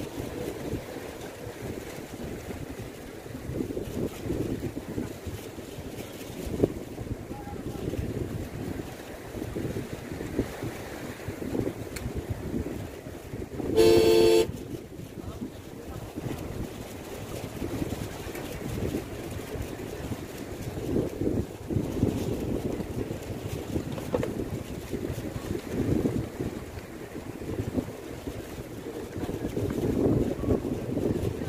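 Wind buffeting the microphone at the seashore, with a single horn toot about a second long near the middle.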